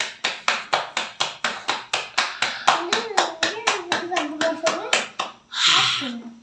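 Roti dough being slapped back and forth between the palms to flatten it by hand, a quick, even patting of about five slaps a second. A wavering voice sounds under the patting in the middle, and a short louder rush of noise comes near the end.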